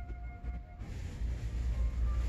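Faint shop background music, a melody of thin notes that drops away about a second in, over a low steady rumble.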